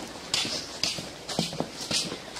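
Footsteps of a person walking: a string of scuffs and knocks roughly every half second, mixed with rustling as the handheld camera moves.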